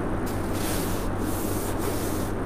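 Paper rustling in several short bursts, like Bible pages being turned, over a steady low room hum.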